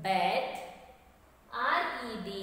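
Speech only: a woman's voice saying two short phrases with a pause between them.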